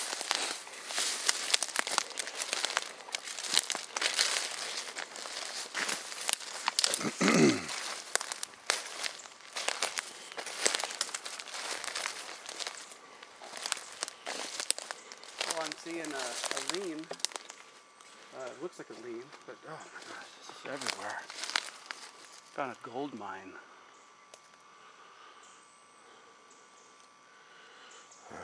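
Footsteps crunching and brushing through forest undergrowth of ferns, twigs and leaf litter, dense for most of the walk and thinning out near the end, with a few short muffled voice sounds in between.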